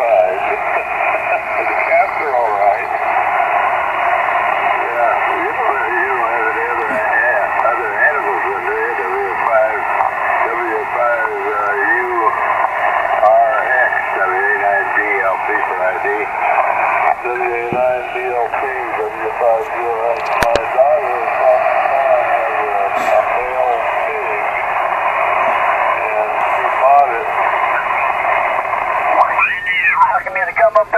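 An Elecraft KX2 transceiver's speaker playing voice signals received on the 20-metre amateur band, thin and narrow-sounding voices over steady hiss. Near the end the voice pitch slides as the tuning knob is turned.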